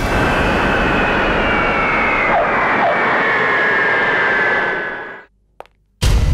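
Twin-engine jet airliner's engines running loud, with a high whine that slowly falls in pitch, fading out about five seconds in.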